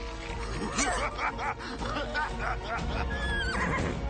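Cartoon unicorns whinnying and neighing, a string of short cries that bend up and down in pitch, over sustained background music.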